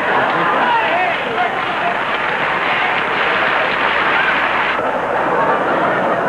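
Studio audience laughing and applauding, a dense continuous crowd noise with a slight dip about five seconds in.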